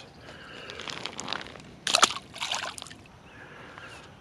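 Water splashing and sloshing in short irregular bursts, the loudest about two seconds in, with scattered small clicks.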